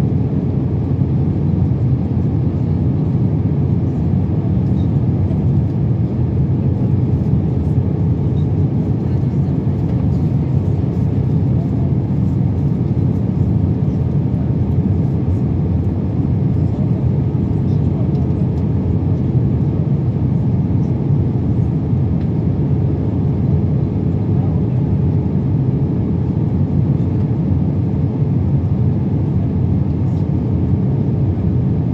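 Steady cabin noise inside an Airbus A321 airliner in flight: the low rumble of its jet engines and rushing airflow, with a faint steady hum on top.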